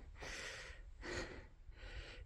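A man's faint breathing between sentences: two soft breaths of about half a second each.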